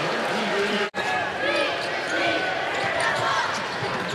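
Basketball arena game sound: steady crowd noise with a basketball bouncing on the hardwood court. It is broken by a brief sudden gap about a second in.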